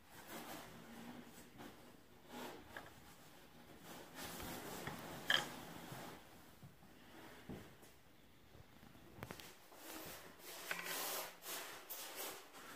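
Faint, scattered rubbing and scraping with a few light clicks, as grease is worked onto the plastic gears of an e-bike hub motor by gloved hands with a small tool. One sharper click comes about five seconds in.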